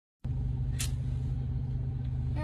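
Steady low rumble of a road vehicle's engine in slow traffic, with a short hiss a little under a second in.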